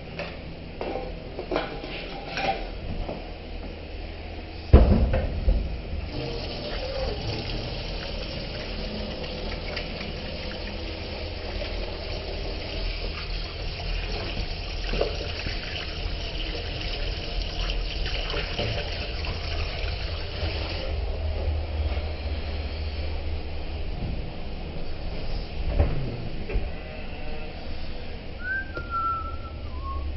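A single loud knock about five seconds in, then water running from a tap into a stainless-steel sink for about fifteen seconds as hands are washed under it.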